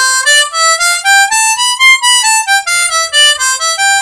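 Hohner Special 20 diatonic harmonica in C playing the C major scale one note at a time, starting on hole 4, climbing an octave and stepping back down.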